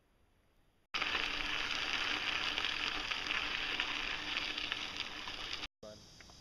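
A loud, steady rushing and crackling noise starts suddenly about a second in and cuts off abruptly just before the end, after near silence.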